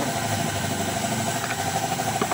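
An engine idling steadily, with a fast, even pulse.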